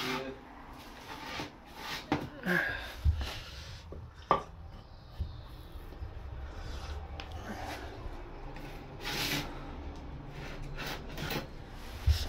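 Hexagon tiles being handled and pressed into tile adhesive: quiet scraping and rubbing with a few light knocks.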